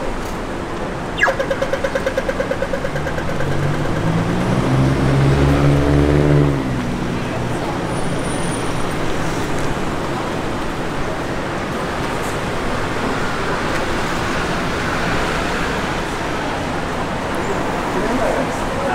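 Audible pedestrian crossing signal starting with a click and ticking rapidly, about ten ticks a second for two seconds. A vehicle engine nearby then swells to the loudest sound and cuts off around six seconds in, over steady city traffic.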